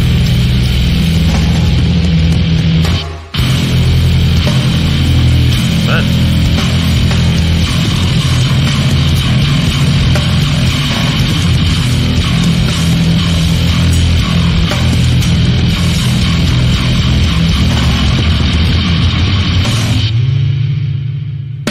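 Noisecore band playing loud, dense, harsh music: a huge, fat distorted bass with drums and no guitars. It cuts out for a split second about three seconds in.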